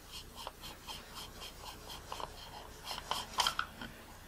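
Faint, repeated rubbing and scraping of hands gripping and twisting the front optical group of a Minolta Rokkor 58mm f/1.2 lens as it unscrews from the barrel, with a louder scrape about three and a half seconds in.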